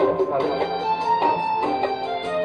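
Bangla song playing, with plucked guitar accompaniment and a man's voice singing over it.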